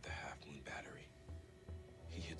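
Hushed, near-whispered dialogue from a TV drama, mostly in the first second, over faint background music.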